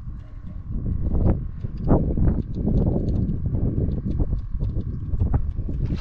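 Fishing reel clicking over and over while a hooked fish is fought on a bent rod, under heavy wind rumble on the microphone.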